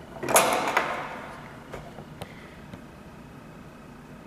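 A short scraping rustle as things are handled on a wooden tabletop, fading over about a second, followed by a few light clicks.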